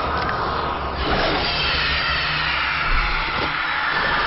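Horror-film sound effects: a loud, steady rushing roar with a low rumble underneath and faint high wavering tones running through it.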